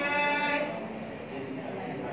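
A person's voice holding a drawn-out syllable for just under a second at the start, then going on talking more quietly.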